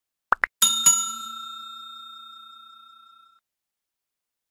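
Subscribe-button animation sound effects: two quick clicks, then a bright bell ding struck twice that rings on and fades away over about two and a half seconds.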